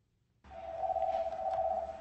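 A telephone ringing: one steady electronic ring tone about a second and a half long, starting about half a second in, over a low hum.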